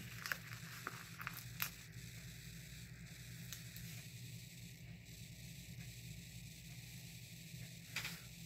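Faint crackle of a paper sticker being peeled off its sticker sheet and handled, a few small clicks in the first two seconds, then only a low steady hum.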